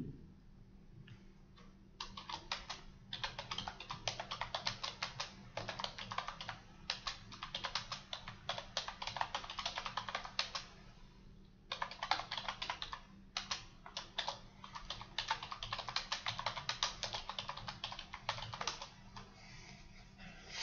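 Typing on a computer keyboard: two long runs of quick keystrokes with a pause of about a second between them. A single short bump right at the start.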